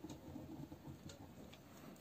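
Faint scratching and light ticks of a pen writing words on paper.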